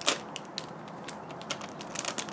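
Thin clear plastic film seal crackling and clicking as it is peeled off a plastic hummus tub and handled: an irregular string of small sharp crackles, thickest near the end.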